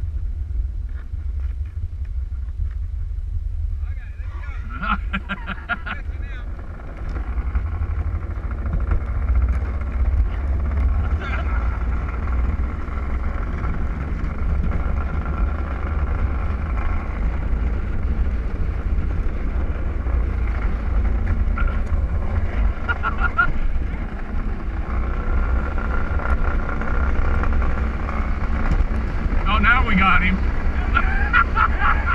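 Luge cart rolling fast down a concrete track: a steady low rumble from the ride, with a thin whine that comes and goes.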